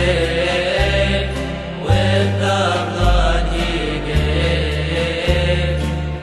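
A chanted hymn: a singing voice with bending, ornamented notes over a deep synthesized bass that steps to a new note about once a second.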